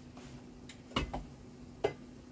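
A few clicks and knocks of a plastic spoon against the rice cooker pot and bowl as cooked rice is scooped out. The loudest knock comes about a second in and another near the end, over a faint steady hum.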